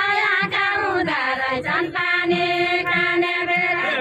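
Group of voices singing a deuda folk song together, unaccompanied, with long held notes in the second half.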